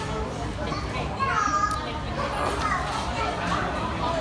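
Indistinct chatter of diners in a busy food court, with a child's high voice rising and falling about a second and a half in; no clear words.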